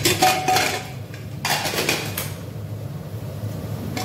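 Aluminium pressure cooker lid being worked open and lifted off: metal clanks at the start, then a longer scraping rattle about one and a half seconds in, followed by lighter metal-on-metal handling.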